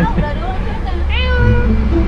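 A single cat-like meow about a second in, falling in pitch and then held briefly.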